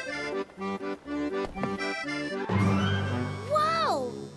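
Cartoon background music led by an accordion, playing short, bouncy notes. About two and a half seconds in, a swelling whoosh rises under it, and near the end a tone swoops up and slides down.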